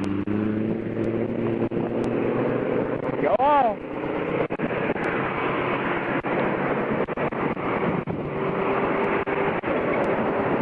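Interstate traffic passing close by, with the steady hum of heavy truck engines. About three and a half seconds in, a short tone rises and falls.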